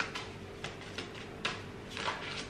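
A deck of oracle cards being handled in the hand: about four or five light, sharp clicks of card edges.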